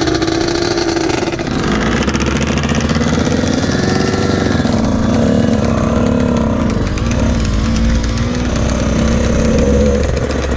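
Dirt bike and sport quad engines running together on a dirt riding area, their pitch wavering up and down a little with the throttle over a low rumble.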